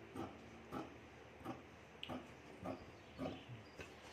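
Large tailor's shears cutting through fabric along a marked pattern line, a faint snip roughly every half second as the blades close.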